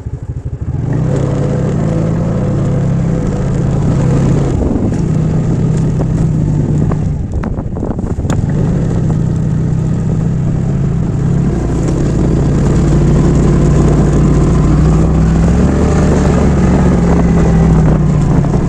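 TVS NTorq 125 scooter's single-cylinder engine running as the scooter pulls away from a standstill and rides slowly along a rough lane, the engine note rising and falling slightly with the throttle. A few sharp knocks sound around the middle.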